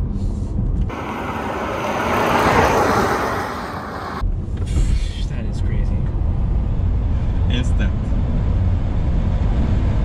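Road and tyre noise inside the cabin of a Tesla Model 3 Performance taken hard through a turn: a steady low rumble with no engine note. From about one second in to about four seconds in, a loud hissing rush cuts in, swells and cuts off suddenly.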